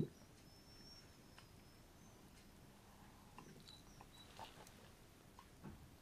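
Near silence: faint soft ticks of a watercolour brush dabbing on paper. A faint, thin, high wavering whistle starts about half a second in and lasts under two seconds, and a few short faint high chirps follow around the middle.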